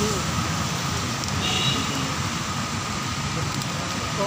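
Steady wash of rain and road traffic on a wet street, with faint voices underneath.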